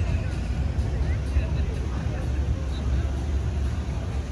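Street ambience at an amusement strip: a car drives past with a steady low rumble, while people's voices and music sound faintly in the background.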